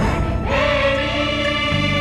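A patriotic Hindi song: a choir sings a long held note over instrumental backing.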